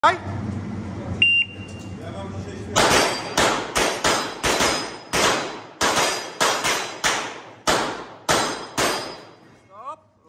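A short high electronic start beep from a shot timer, then two pistols firing fast and overlapping, about fifteen shots over some six seconds. Each shot is a sharp crack with a reverberant tail off the range walls, and some carry the thin ring of steel plate targets being hit.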